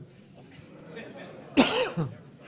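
A man coughs once, about a second and a half in, short and loud against quiet room tone.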